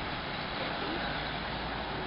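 A pack of racing bicycles passing close by: a steady whir of tyres and freewheels with the rush of the riders going past.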